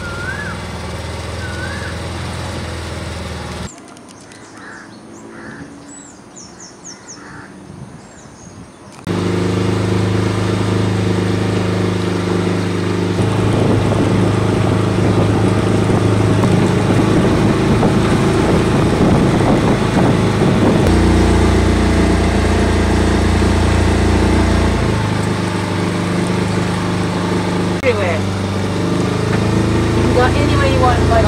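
Small outboard motor driving a tour boat, running steadily at cruising throttle. It drops away for about five seconds early on, then comes back and holds, with a short change in its note about two-thirds of the way through.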